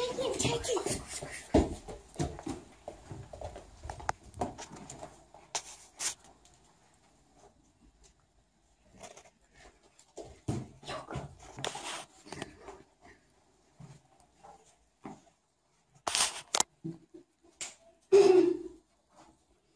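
Brief muffled voice sounds, then scattered footsteps and small knocks of people moving through a house, with a few louder sharp knocks near the end.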